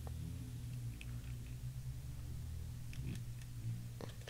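Light handling of a clear acrylic stamp block pressed onto paper on a tabletop: a couple of faint ticks, about a second in and near three seconds, over a steady low hum.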